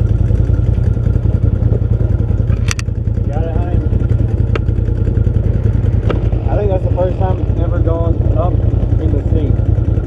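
A side-by-side UTV engine idles with a steady low rumble. There is a sharp click almost three seconds in, and voices can be heard in the background.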